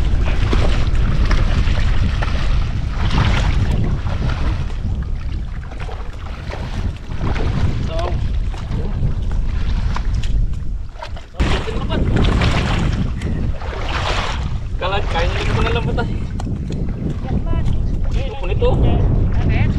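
Wind buffeting the microphone in a steady low rumble over shallow water sloshing, with faint voices breaking through about fifteen seconds in.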